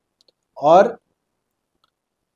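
One short spoken word from a man; otherwise near silence, broken by a couple of very faint clicks.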